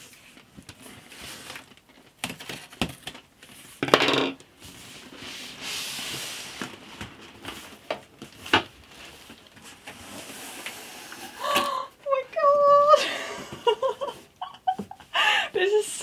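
Scissors snipping packing tape on a large cardboard shipping box, with sharp clicks and knocks. Then cardboard scrapes and rustles for a few seconds as the box is handled and opened. Short breathy exclamations are heard near the end.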